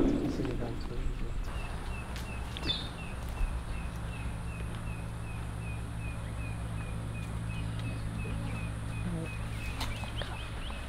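A bird repeating one short high note about three times a second, over a low steady outdoor rumble.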